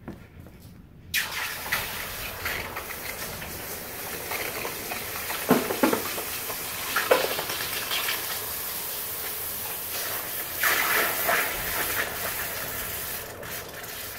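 A freshly cast bronze piece is plunged into a tub of water to quench it. The hot metal sets off a steady hissing sizzle that starts suddenly about a second in, with louder crackles and pops around the middle, and dies down near the end.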